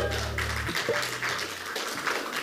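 Congregation clapping after a worship song. The band's last held low note rings under it and cuts off under a second in.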